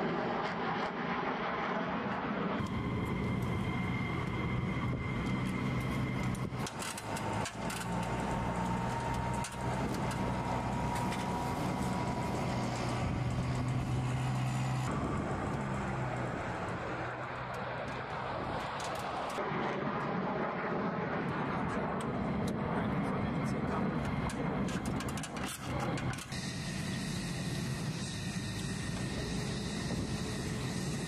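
Steady drone of running machinery on a military jet flight line, a low hum with faint whines above it, that changes abruptly several times as shots cut, with scattered clicks and knocks of flight gear and equipment being handled.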